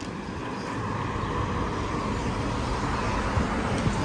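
City street traffic: a passing vehicle swells over the first couple of seconds and holds, over a steady low rumble.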